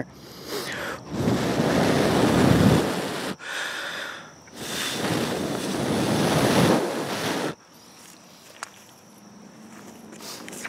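Two long rushes of air buffeting the microphone, the first about two seconds and the second about three, each cutting off sharply.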